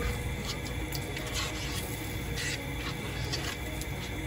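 A spoon stirring thick curry in a pot, with a few soft scraping strokes against the pot over a low steady background.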